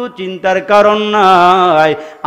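A man's voice in the sing-song chanting delivery of a Bengali waz sermon: a few short syllables, then one long held note that wavers slightly and breaks off just before the end.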